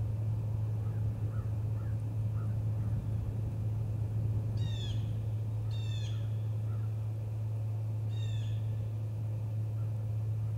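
A bird gives three short, harsh calls, about halfway through and again near the end, with a few faint chirps before them, over a steady low hum.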